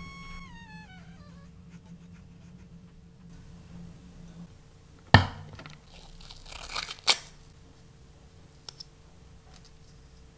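Scissors cutting a strip of white tape, with a sharp knock about five seconds in, then scratchy cutting that ends in a crisp snip a couple of seconds later. A faint steady hum runs underneath.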